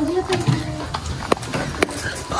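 Footsteps on a loose gravel floor while walking, with two sharp clicks in the second half and a brief bit of voice at the start.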